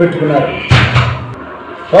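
A man's voice briefly, then a single sudden thump about two-thirds of a second in, with a short ringing tail.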